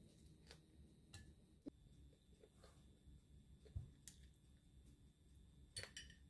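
Near silence broken by a few faint, scattered clicks and soft squishes of a person biting into and chewing a sandwich.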